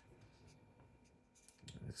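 Near silence: room tone, with faint rubbing and clicking from fingers handling a plastic coin card.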